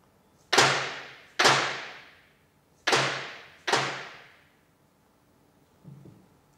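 Four hammer blows on a steel bearing tool, in two pairs, each ringing out for about a second as the bearings are knocked off a Heiniger shearing handpiece's crankshaft.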